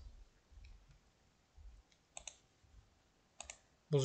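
Two faint computer mouse clicks, each a quick double tick, about two seconds and three and a half seconds in, over quiet room tone.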